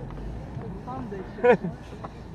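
A vehicle engine running steadily at low revs, heard from inside the cabin, with a short call from a man about a second and a half in.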